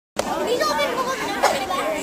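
A group of girls chattering at once, several voices overlapping, with one short sharp sound about one and a half seconds in.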